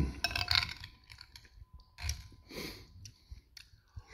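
Close-up eating sounds: chewing a mouthful of cabbage and sausage soup, with wet lip smacks and a few sharp clicks. There are two main bursts, in the first second and again about two seconds in.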